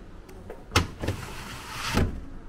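Retractable luggage-compartment cover of a Mercedes-Benz G-Class unhooked with a sharp click, then winding back onto its spring roller with a hiss that builds for about a second and ends in a snap.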